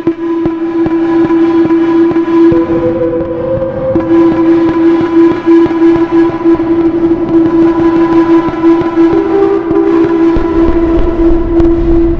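Behringer Neutron analog synthesizer holding one sustained, buzzy droning note, its tone shifting as its settings are tweaked. A second, higher tone slides upward a few seconds in, and a deep bass rumble joins near the end.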